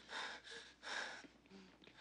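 A woman gasping for breath: three short, breathy gasps in the first second or so, then fainter breathing.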